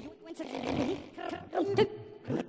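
Human voice cut into short fragments and transformed by Kyma granular processing: chopped vocal sounds that swoop up and down in pitch, with a hissing stretch in the first half and the loudest jabs near the end.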